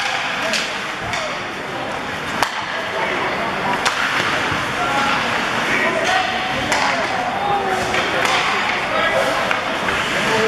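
Live ice hockey play in an arena: a steady wash of crowd and player voices with several sharp clacks of sticks and puck, the loudest about two and a half seconds in.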